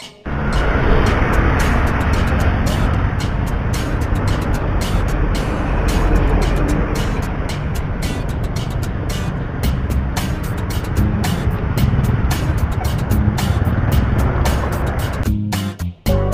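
Steady, loud road-vehicle and wind noise with no breaks, with music mixed in.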